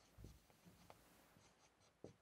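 Near silence, with a few faint strokes of a marker writing on a whiteboard.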